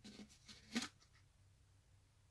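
Quiet room tone with one brief faint click a little under halfway through and a few weaker ticks near the start.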